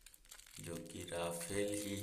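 Thin plastic toy packet crinkling as it is handled and pulled open by hand. A voice joins in from about half a second in.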